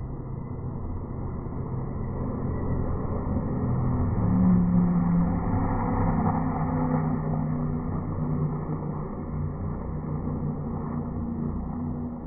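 Formula 1 car engine passing on the circuit, swelling to a peak about five seconds in and then fading slowly. The sound is muffled, with the high end cut off.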